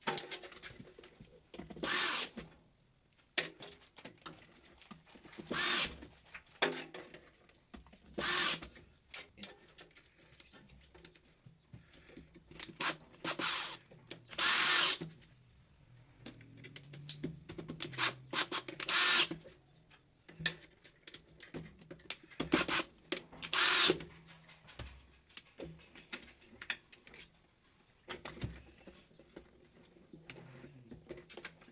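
A small handheld power tool, such as a cordless screwdriver, run in about eight short bursts of half a second to a second at irregular intervals, with quieter handling of wires between the bursts.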